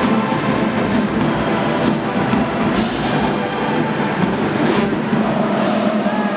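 College marching band brass playing loud, sustained chords, with a few percussion hits cutting through.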